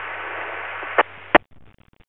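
Radio scanner hiss of an open two-way channel just after a transmission ends. About a second in come two sharp clicks as the squelch closes and the hiss cuts off.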